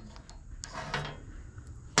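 Faint handling sounds with a few light clicks as a pellet-grill hot rod igniter is moved about on the grill's metal lid, with a sharper click near the end.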